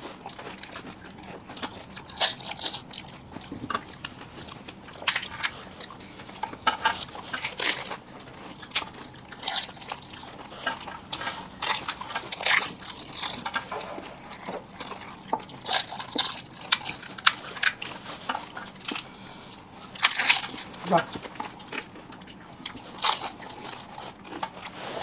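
Close-up eating sounds of fuchka: crisp hollow puri shells crunching as they are bitten and chewed, mixed with wet slurping of the spiced water inside, in irregular bursts from several eaters.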